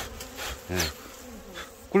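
Honeybees buzzing around a wild honeycomb being cut out of a tree hollow, one flying close past with a steady drone that sags slightly in pitch.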